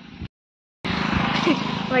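A short dropout to dead silence, then a motorcycle engine running close by, loud and steady.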